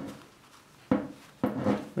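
A few light knocks and rubbing as a gloved hand handles a copper wire clamped in a small metal bench vise, one at the start and two more about a second and a second and a half in.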